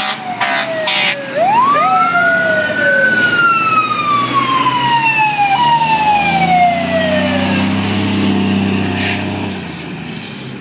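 Fire truck sirens wailing: a fast wind-up about a second in, then long falling wails, with a few short horn blasts at the start. A fire truck's diesel engine comes up close in the second half as the wailing fades.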